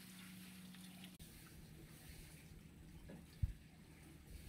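Quiet background with a faint steady hum for about the first second, then a single low thump near the end: a climber's step knocking the wooden ladder propped against a coconut palm.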